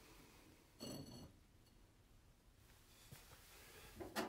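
Near silence: room tone, with one brief faint squeaky scrape about a second in and a tiny tick near the end.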